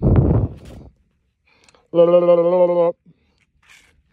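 A man's voice holding one steady, drawn-out note for about a second, like a long 'hmm' while weighing something up. Right at the start there is a short rushing noise.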